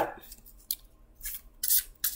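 A deck of oracle cards being shuffled by hand: a few brief, papery rasps of cards sliding against one another.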